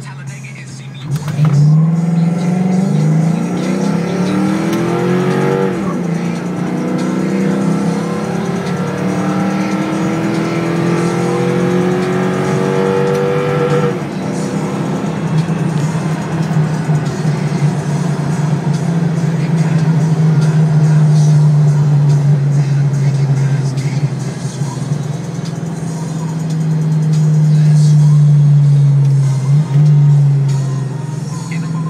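Ford Mustang engine heard from inside the cabin, accelerating through the gears. The revs climb and fall away at an upshift about six seconds in, climb again to a second shift at about fourteen seconds, then settle into a steady cruising note that swells again near the end.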